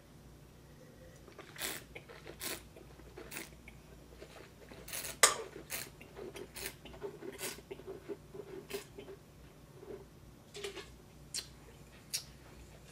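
Mouth sounds of a man tasting white wine: a series of short wet smacks and clicks as he works the wine around his mouth, with a louder one about five seconds in, over a faint steady room hum.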